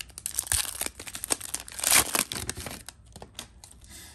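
Foil wrapper of a 2017 Donruss Optic football card pack being torn open and crinkled by hand, loudest about two seconds in. It thins to a few light ticks near the end.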